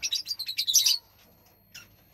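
Lovebirds chirping: a rapid string of short, high chirps for about the first second, then a few faint calls near the end.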